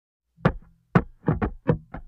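Opening of a channel intro jingle: a run of sharp percussive knocks starting about half a second in and coming faster toward the end, over a low held drone.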